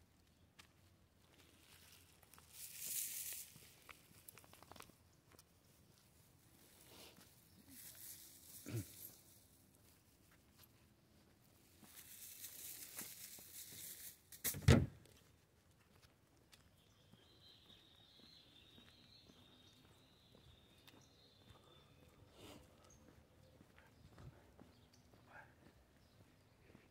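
Quiet footsteps and shuffling from a walk with two leashed dogs on paving stones, coming in three short rustling bursts, with one sharp knock a little past halfway. A faint, high, wavering tone follows later.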